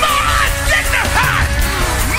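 Loud, fast gospel praise-break music from a church band, with voices yelling over it again and again.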